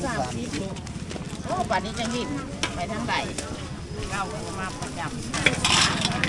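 Open-air market ambience: several people talking faintly in the background over a low bed of noise, with a brief rustle near the end.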